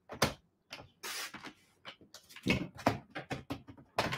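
Paper trimmer at work as paper is lined up and cut: a short scraping swish about a second in, then a run of small clicks and taps from the trimmer and the handled paper.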